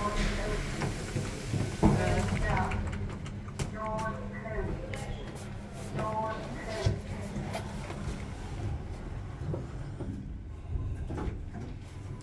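Kone MonoSpace passenger lift car running, heard from inside: a steady low hum as it travels, with a thump about two seconds in and background voices.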